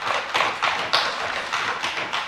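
A dense run of quick, light taps and rustles, with no voice.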